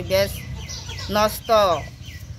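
A chicken calling twice in quick succession about a second in, the second call sliding down in pitch.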